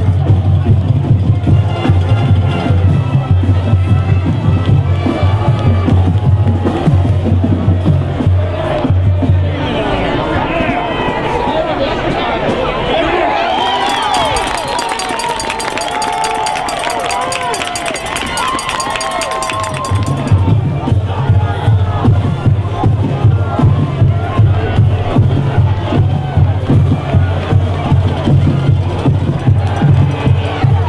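Loud music with a steady, pulsing bass beat, cutting out after about nine seconds while a crowd cheers and shouts, then starting again for the last ten seconds.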